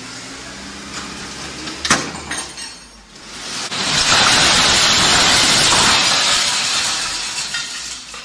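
A load of mixed scrap metal sliding off a tipping dump-truck bed, with a sharp metal clank about two seconds in, then a loud rushing clatter and crash of scrap pouring out for about four seconds that fades near the end.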